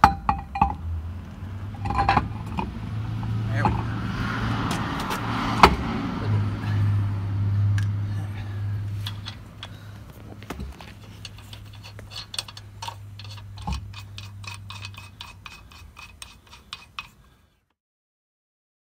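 Metal lug nuts clinking as they are threaded by hand onto the wheel studs of a steel temporary spare wheel, with a sharp knock as the wheel is worked onto the hub. A low steady hum runs under much of it, and the sound cuts off shortly before the end.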